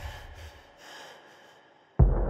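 Faint room noise fading out: a low rumble dying away, with a soft breathy swell about a second in.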